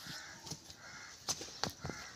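A crow cawing faintly twice in the first second, followed by several sharp clicks or knocks in the second half.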